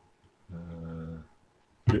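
A man's low, drawn-out hesitation hum, a filled pause held on one steady pitch for about three-quarters of a second.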